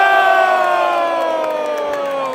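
A long, held yell from a voice in the arena crowd, slowly falling in pitch, over general crowd noise; a second falling yell joins near the end.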